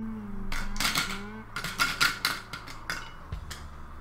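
A man humming a note for the first second or so, over a quick, irregular run of short clicks and scrapes that continues to near the end.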